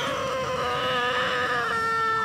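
Five-month-old Burmese kitten yelping in pain as its abdomen is pressed: one long drawn-out cry that slowly sinks in pitch, the kitten's reaction to tenderness over the kidneys and belly.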